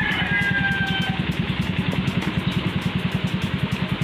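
Motorcycle engine idling with a steady, rapid pulse.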